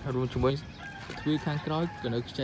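A man's voice talking in short, quick phrases.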